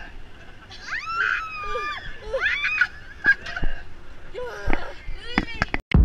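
Roller coaster riders yelling and screaming in long cries that rise and fall, over steady rushing wind noise and a few sharp clicks from the ride. Just before the end the sound cuts off and a loud deep boom begins.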